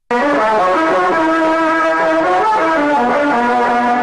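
Instrumental music with long held notes that step from one pitch to the next.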